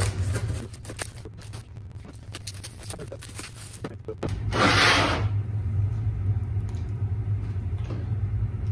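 Plastic and foam packaging rustling and crinkling as a metal XY table is unwrapped and lifted out, with a louder burst of rustling about four and a half seconds in. A steady low hum runs underneath.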